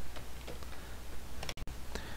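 A few faint clicks from computer input over a low steady hum.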